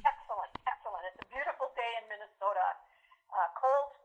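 Speech only: a woman talking over a telephone line, her voice thin and narrow-band.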